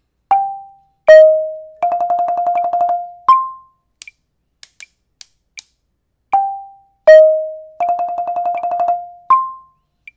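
Marimba played with yarn mallets: a short phrase of single notes G and E-flat, a rapid rolled F lasting about a second, then a high C, played twice. Each struck note rings and fades quickly.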